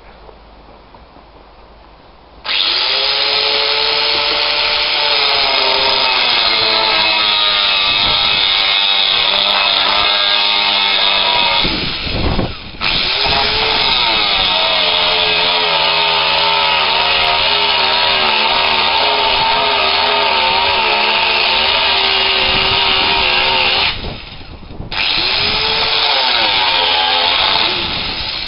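Angle grinder cutting through a metal axle rod: it starts up about two seconds in and runs loud and steady, its motor whine sagging in pitch as the disc bites. It cuts out twice for about a second and spins back up.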